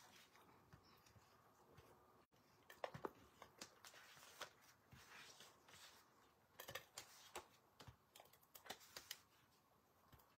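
Near silence with faint, scattered small clicks and paper rustles from a handheld tape-runner adhesive dispenser and from hands pressing card stock, a few about three seconds in and more in the second half.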